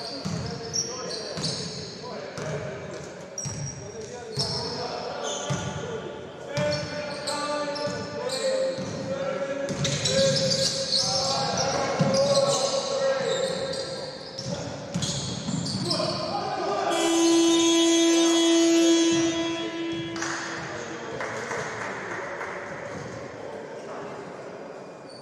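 Indoor basketball game on a hardwood court in a large echoing hall: the ball is dribbled and bounced, sneakers squeak, and voices shout. About 17 seconds in, a loud steady buzzer sounds for about three seconds, timed with the shot clock running out.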